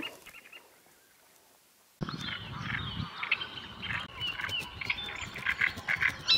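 About two seconds of near silence, then outdoor birdsong starts abruptly: several birds calling and singing with short, high, repeated notes.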